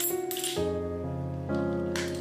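Background music with sustained notes throughout. In the first half second, a few metal coins clink as they drop onto banknotes in a small plastic wet-wipe lid case, and a short click near the end fits the plastic lid being snapped shut.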